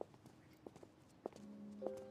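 A few faint, irregular hard footsteps on stone paving. About a second and a half in, soft background music begins with a low held note, then higher sustained notes.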